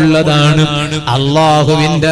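A man's voice chanting in a melodic, sung style, holding long notes that bend and glide between pitches.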